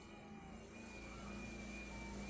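Faint background noise: a low rumble that swells through the second half, with a faint steady high-pitched tone.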